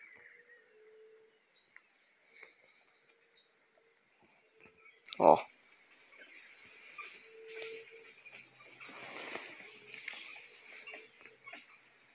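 Steady high-pitched chirring of forest insects, with a man's short exclamation "ó" about five seconds in.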